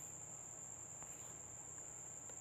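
Faint, steady high-pitched whine with a low hum beneath it, and a single faint tick about a second in.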